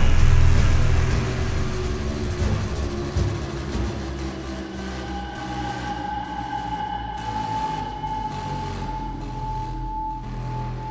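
Dark, suspenseful background music: a loud low swell at the start that dies away over a few seconds, then a long held high note from about halfway through.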